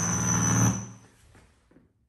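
A steady electrical hum with a thin high whine, which cuts off abruptly less than a second in.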